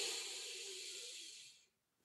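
A man's slow, deep in-breath through the nose, a breathwork inhale, that fades out about a second and a half in.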